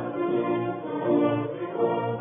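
Orchestra with prominent brass playing slow, sustained chords as the opening of a hymn-like patriotic song, in the narrow, muffled sound of an old radio broadcast recording.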